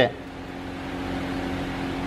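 Steady mechanical hum of a running machine, such as a fan, holding a few constant pitches at an even level.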